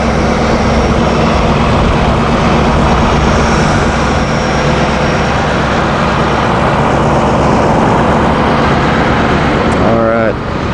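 Chevrolet Duramax 6.6-litre turbo-diesel V8 idling, heard close up in the open engine bay: a loud, steady running sound with a thin high whine that comes and goes in the first few seconds.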